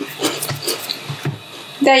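Freshly fried prawn crackers crunching as they are chewed, a run of short, irregular crispy crackles.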